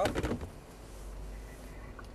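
Low, steady cabin hum of a Cadillac SRX with its engine near idle as the car barely creeps forward, after a short spoken word at the very start.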